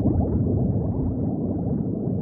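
Underwater bubbling: a dense, steady stream of bubbles heard as many quick rising blips overlapping one another.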